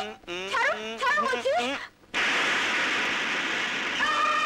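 High, gliding non-word vocal sounds: playful squeals and exclamations. About two seconds in they break off, and after a brief gap a sudden steady rush of noise sets in, a film sound effect laid over a scene cut.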